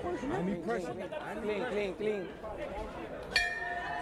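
Arena crowd chatter, then about three and a half seconds in a single strike of the boxing ring bell that keeps ringing, signalling the start of the round.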